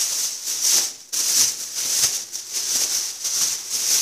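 Thin clear plastic bag rustling and crinkling as it is handled and filled with green peppers, with a short break about a second in.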